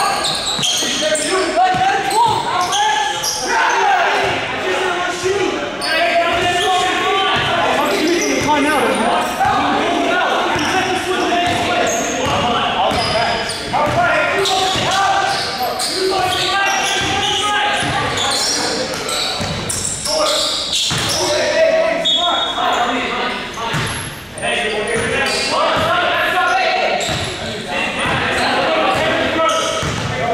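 Basketball bouncing on a hardwood gym court during play, with players' voices calling out and echoing in the large hall.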